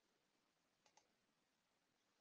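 Near silence, with two faint clicks close together about a second in.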